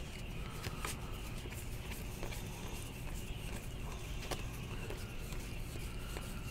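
Faint handling of a stack of trading cards by hand, with a few soft, scattered ticks as cards are slid and flipped.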